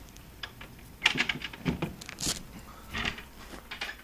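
Several short rustles and scrapes of a zippered clear-vinyl boat enclosure being opened and pushed through.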